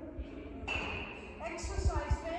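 A high-pitched voice starting about two-thirds of a second in, its words not made out, with its pitch sliding up and down. Soft low thumps sound underneath.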